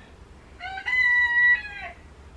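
A rooster crowing once: a single call of a little over a second that rises, holds a steady pitch and falls away at the end.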